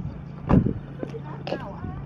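Steady low hum of an idling vehicle engine, with a sharp thump about half a second in and a softer knock about a second later.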